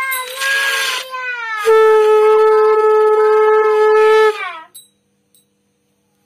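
Conch shell (shankh) blown: a short breathy note that sags in pitch, then after a brief break a long steady note of about two and a half seconds that drops in pitch as it dies away.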